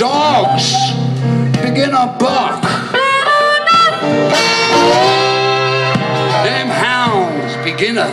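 Live country-blues band: harmonica playing a fill of notes that bend up and down over guitar accompaniment and a steady low note.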